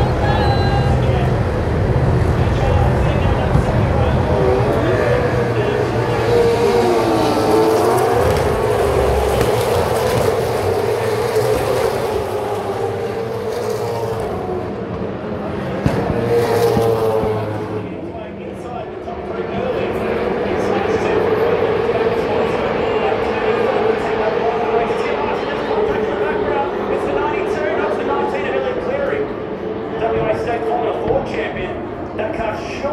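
Supercars V8 race engines running on the circuit, a steady engine note that dips and rises in pitch early on and holds steady through the second half, mixed with indistinct trackside PA commentary.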